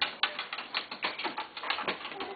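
Light clicks and knocks of toys being handled on a wooden floor and against a plastic toy chest, a quick irregular run of about a dozen taps with the sharpest one near the end.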